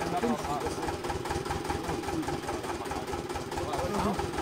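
Well-drilling rig's engine running steadily at idle, with a fast, even low beat.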